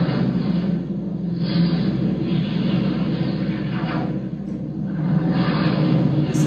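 Soundtrack of a short science clip played over room speakers: music with a steady low rumble and noisy whooshes that swell and fade every second or two.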